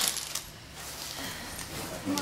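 Quiet handling of an opened foil trading-card pack and its cards, with faint rustling and a few light clicks as cards are set down on a wooden table.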